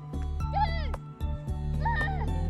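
Background music with a steady low bass line, over which a flock of large migrating birds flying in long skeins gives two short, arched calls, about half a second in and near the end.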